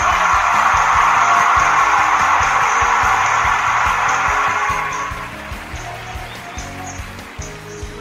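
Podcast theme music with a pulsing bass line. A loud hissing wash over it fades out about five seconds in.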